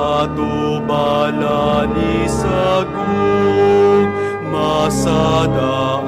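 A slow hymn sung with instrumental accompaniment, long held notes moving from pitch to pitch.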